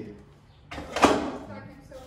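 A short scrape ending in a single sharp knock about a second in, from a wooden box being handled.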